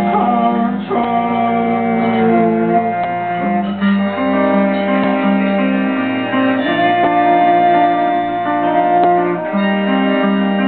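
Live folk band music: electric guitar playing under long held melody notes that change pitch every second or so.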